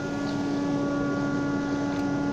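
Steady hum of a running workshop machine's electric motor, with one clear tone and its overtones, unchanging throughout.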